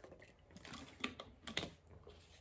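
Faint handling sounds of a small plastic water bottle being drunk from and lowered: soft crinkles and a few sharp clicks, two of them standing out about halfway through, half a second apart.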